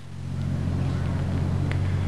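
A low, steady engine drone from a machine running in the background. It swells in over the first half second, then holds.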